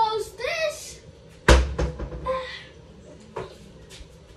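A short, high-pitched child's vocal sound, then one sharp knock about a second and a half in, like a kitchen cupboard door shutting, followed by a few lighter taps and clicks.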